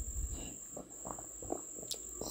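Quiet background with a steady high-pitched tone that breaks off briefly, and a single sharp click near the end.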